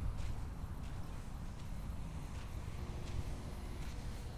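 Wind rumbling on the camera microphone, with faint, irregular footsteps on sand.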